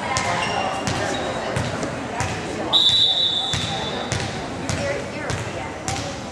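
A volleyball being struck again and again, sharp thuds about every half second to second, over crowd voices in a gym. About three seconds in, a single shrill whistle blast sounds for about a second and a half.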